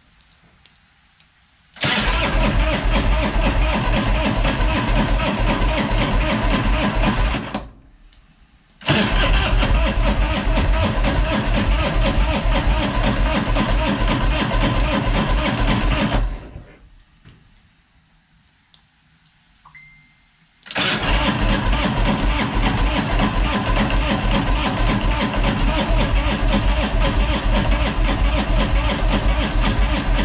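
Harley-Davidson V-twin being cranked on its electric starter in three long, loud bursts, starting about 2 s in, again about 9 s in, and again about 21 s in, with short pauses between. It is a hard start: the battery is low on charge and the spark plugs are fouled from the fuel being left on.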